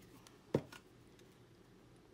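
A single sharp knock about half a second in from handling a glue stick, followed by faint paper rustles as a paper strip is pressed onto a journal page.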